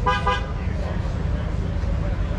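A short horn toot, under half a second, with one steady pitch, right at the start, over a steady low outdoor rumble.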